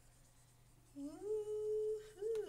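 A woman humming: quiet for about the first second, then one note that slides up and is held steady.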